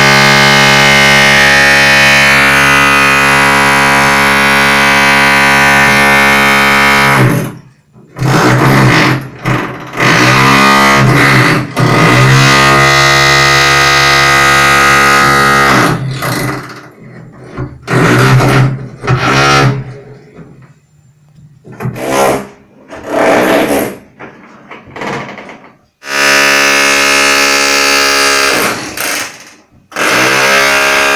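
Hammer drill motor running with a steady high whine for about seven seconds, then cut off. The trigger is pulled and released in a series of short bursts, each falling in pitch as the motor winds down. A long steady run starts again a few seconds before the end.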